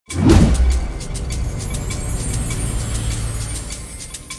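Cinematic logo-intro sting: a sudden deep boom just after the start, sweeping down in pitch, then a sustained low rumble that fades near the end, with quick glittering ticks high above it.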